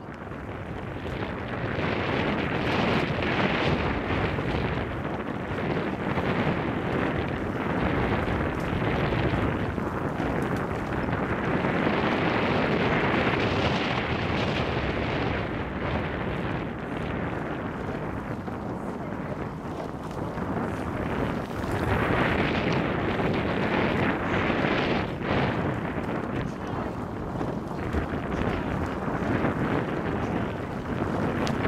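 Wind buffeting the microphone: a loud, steady rushing noise that swells and eases every few seconds.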